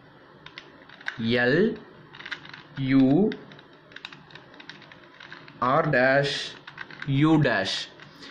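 A plastic 2x2 Rubik's cube being turned by hand: a scatter of small, quick clicks as the layers rotate. Four short spoken phrases come in between and are louder than the clicks.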